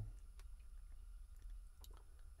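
Quiet vehicle-cabin background: a steady low hum with two faint small clicks, one about half a second in and one near the end.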